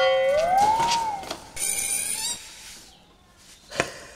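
Comedy sound effects: a whistle-like tone that glides up and then sags back down, followed by a brief high shimmering sparkle and, near the end, a single click.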